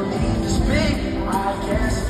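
Live concert music played loud through an arena sound system, with held band notes and a voice singing a gliding phrase about halfway through.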